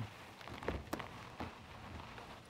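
Faint steady hiss of heavy rain and gusting wind on an outdoor microphone, with a few soft ticks.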